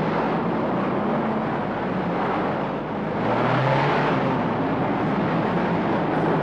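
Sound effect of a small van's engine running steadily as it drives along, a low hum under a noisy drone that grows slightly louder about halfway through.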